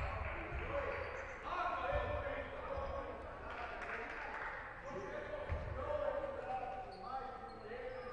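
Voices calling out across a sports hall during a break in play at a basketball game, with a few dull thuds of a basketball bouncing on the hardwood court.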